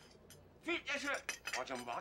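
A few light clinks of a spoon against a drinking glass, about halfway through, heard under a man's talking.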